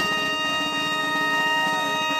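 Bagpipes and two trumpets holding one long, steady chord together.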